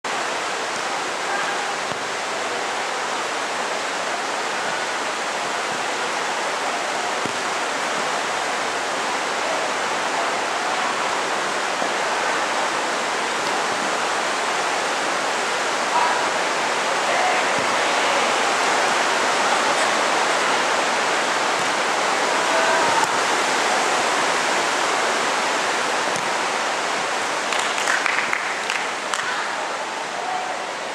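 A steady rushing hiss fills the covered court, with faint, distant shouts from players now and then. A few short sharp knocks come near the end.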